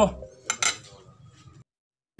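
Two quick clinks of metal cutlery against a ceramic plate about half a second in, followed by faint handling, before the sound cuts out near the end.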